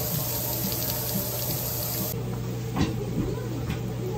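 Meat sizzling on a grill pan over charcoal, a steady bright hiss. After about two seconds it cuts off, leaving a low hum and a few short clicks.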